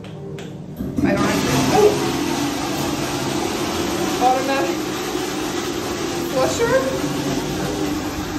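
Automatic public toilet flushing by itself as the cubicle is left: a loud, steady rush that starts about a second in and runs on for about seven seconds.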